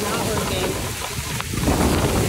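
Outdoor noise of wind rumbling on a phone microphone over a steady hiss of rain, growing louder near the end.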